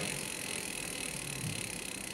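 Bicycle rear wheel with a Bionx electric hub motor spinning after the throttle has kicked the motor in: a steady, even running noise.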